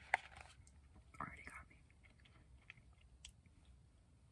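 Close-miked chewing with small wet mouth clicks: a sharp click just after the start, a short louder mouth sound about a second in, then faint scattered clicks.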